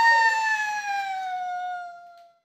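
A voice holding one long, high note that slowly slides down in pitch and fades away near the end.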